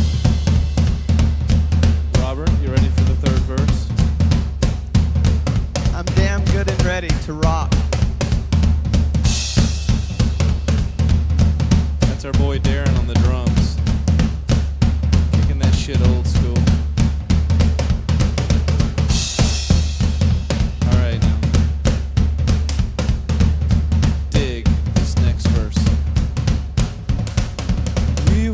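Live piano, bass guitar and drum kit trio playing a song together: a steady drum beat with bass drum and snare under a bass line and piano, with cymbal crashes about a third and two thirds of the way through and again near the end.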